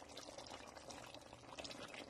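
Faint bubbling and crackling of a chicken stew simmering in a pot, with a spatula stirring through it.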